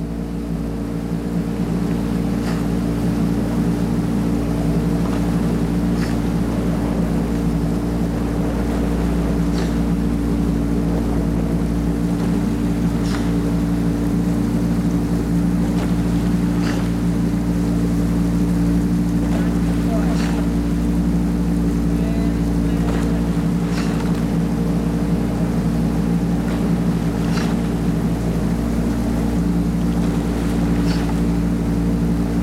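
Coaching launch's outboard motor running steadily, a constant low drone that builds up over the first couple of seconds. Over it, a short light knock comes about every three and a half seconds, in time with the rowers' strokes as the oar blades catch.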